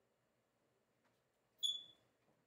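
Near-silent room, then one short high-pitched squeak about a second and a half in, fading quickly.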